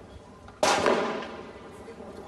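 A single gunshot about half a second in, loud and sudden, echoing as it dies away over about a second.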